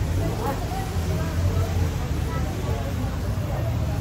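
Chatter of passersby in a busy pedestrian alley: several voices talking indistinctly at once, over a steady low hum.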